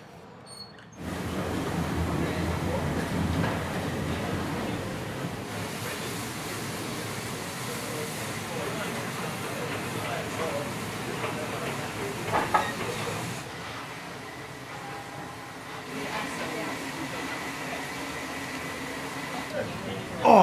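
Steam locomotive standing at the platform with steam hissing steadily, louder for the first few seconds, with a brief sharp sound a little past halfway.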